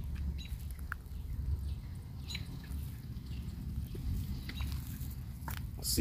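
Light rustling and crunching as someone walks over dry straw mulch, under a steady low rumble of wind or handling on the microphone, with a few faint short bird chirps.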